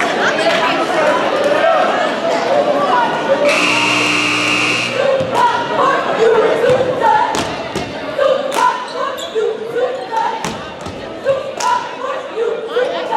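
Gym scoreboard buzzer sounding once for about a second and a half. Afterwards a basketball is bounced on the hardwood floor a few times while cheerleaders chant in short, rhythmic calls, all echoing in a large gym.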